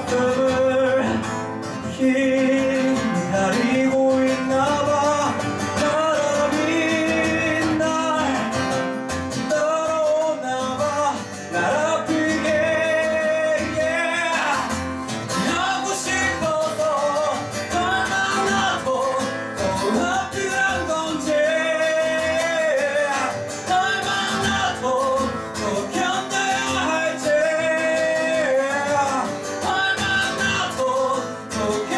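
A man singing a song in Korean live into a microphone, accompanying himself on acoustic guitar, the vocal line continuous.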